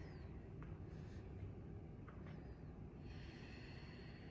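Faint breathing of a person holding a stretch: a short breath about a second in and a longer breath out near the end, over a steady low room rumble.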